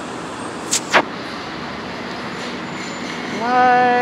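Steady city street noise, with two sharp clicks just before a second in and, near the end, a held pitched sound lasting under a second.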